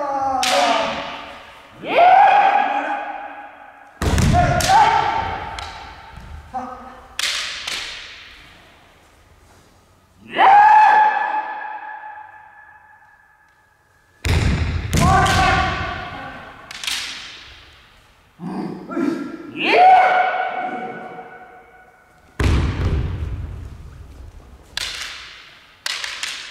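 Kendo match: long, drawn-out kiai shouts alternating with sudden hits of bamboo shinai strikes and stamping feet on a wooden gym floor, each followed by a long echo in the big hall. The heaviest hits come about four seconds in, near the middle and a few seconds before the end.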